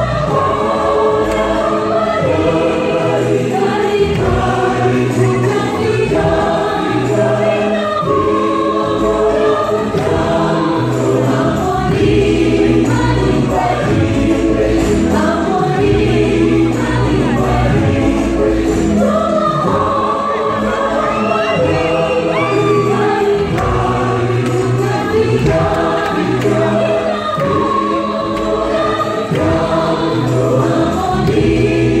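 Mixed choir of men and women singing the refrain of a gospel song, with steady low accompanying notes.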